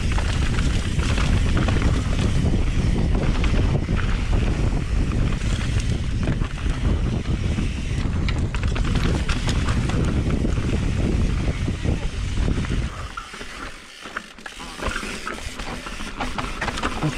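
Wind buffeting the camera microphone and knobby tyres rolling over a dirt trail during a fast mountain-bike descent, with small rattles and knocks from the bike. The rush drops away sharply for a couple of seconds near the end, then comes back.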